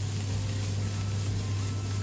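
Grated carrots and onion sizzling steadily in hot oil in a frying pan, just starting to brown, over a steady low hum.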